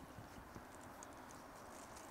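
Faint, irregular patter of flower seed and worm castings being shaken inside a lidded bottle to mix them.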